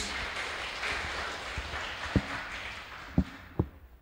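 Congregation applauding in a church, the clapping fading away, with a few dull thumps in the second half.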